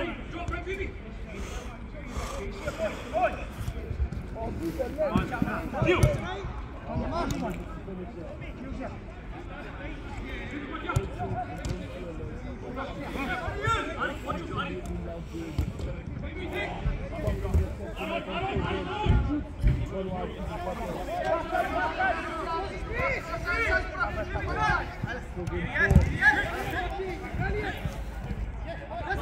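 Footballers calling and shouting to each other across a five-a-side pitch, with a few sharp thuds of the football being kicked. The loudest kick comes near the end.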